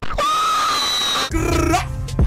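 A young woman's voice singing one long, steady high note for about a second, then a shorter wavering note.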